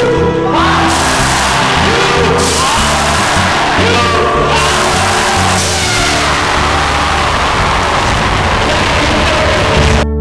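Loud event music with a steady bass beat, under a crowd cheering and whooping.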